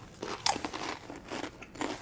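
Two people biting and chewing chips loaded with cowboy caviar: irregular crisp crunches.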